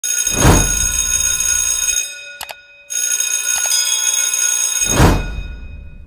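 Intro sound effect: a whoosh, then sustained bell-like ringing tones that break off about two seconds in and come back a second later. A second whoosh near the end fades out.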